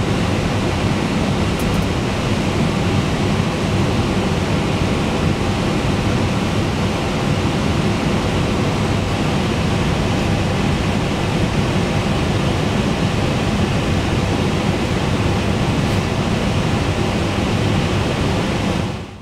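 Steady rushing noise on the flight deck of an MD-11F freighter standing at the stand. It is an even, unchanging hiss and hum, heaviest in the low range.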